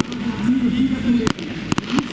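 Aerial fireworks bursting: sharp bangs about a second and a quarter in, then a quick double bang near the end.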